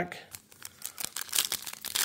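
Foil trading-card pack wrapper crinkling as it is handled: a run of crisp crackles, sparse at first, then denser and louder in the second half.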